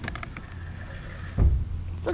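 A dull low thump about one and a half seconds in, over a steady low hum and a few faint clicks.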